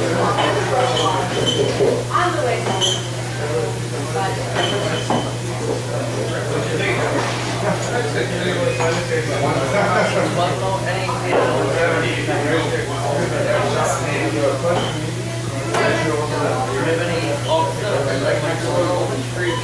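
Bar crowd chatter: many voices talking at once, none of it clear, over a steady low hum, with a few short high clinks.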